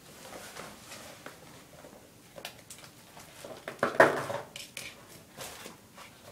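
Things being handled and moved about by hand: scattered light clicks and knocks, with one louder clatter about four seconds in.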